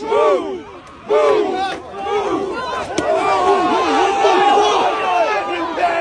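Crowd of protesters shouting and yelling at police, many loud voices overlapping, with a single sharp knock about halfway through.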